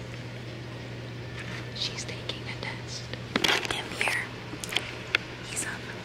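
Soft whispering and low voices in a quiet classroom over a steady low hum, with short rustles and clicks, the loudest about three and a half seconds in.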